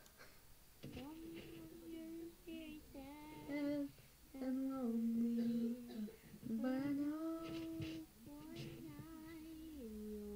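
A child's singing voice played back from an old iPod voice memo: a slow melody of long held notes that glide from one pitch to the next, with short breaks between phrases.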